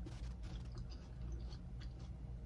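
Close-miked chewing of watermelon: soft, irregular wet mouth clicks and smacks over a steady low hum.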